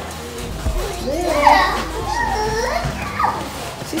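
A toddler's excited, high-pitched vocalising: wordless squeals and babble that swoop up and down in pitch. They start about a second in and die away shortly before the end. The sounds are happy excitement.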